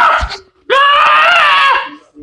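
A high-pitched voice screaming: one long scream trails off in the first half-second, then a second long, wavering scream follows for about a second.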